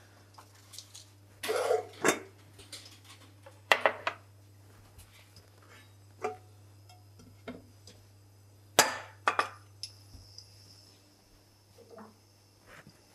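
Metal pans being handled and set down on a glass hob and worktop: scattered knocks and clinks of cookware, the loudest about nine seconds in, over a faint steady low hum.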